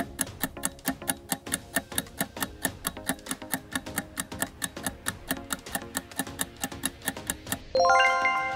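Quiz countdown-timer sound effect: a clock ticking about four times a second over light background music, ending in a bright chime as the time runs out.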